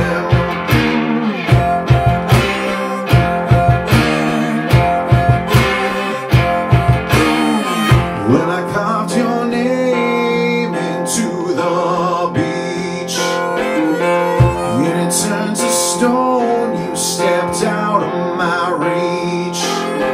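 Instrumental blues break: a plucked cigar box guitar with wavering, bent notes over a low, steady percussive beat.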